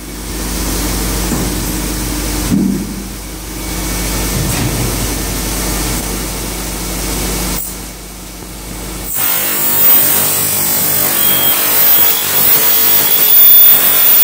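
A steady low machine hum, then about nine seconds in an abrasive cut-off saw starts grinding through a steel sheet, louder, with a thin high whine over the grinding.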